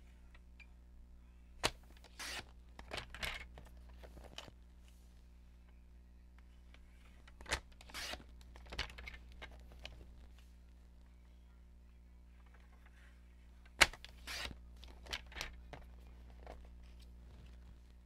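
Sliding-blade paper trimmer cutting strips of patterned paper three times. Each cut starts with a sharp click and is followed by the scratchy sound of the blade running along the rail through the paper.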